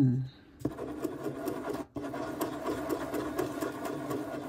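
Gel pen scribbled rapidly back and forth on paper, a steady rasping run with a short break about two seconds in, to get the ink flowing from a new, never-used Pilot G2.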